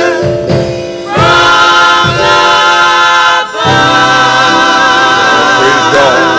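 Gospel choir singing, holding long notes with vibrato and breaking off briefly about a second in and again at about three and a half seconds.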